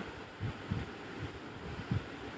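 Faint low background rumble with a few soft low thumps, like noise on the microphone during a pause in speech.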